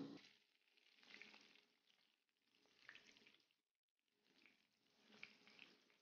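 Faint crackling of batter-coated spinach leaves frying in hot oil in a wok, coming and going in several soft swells with small pops.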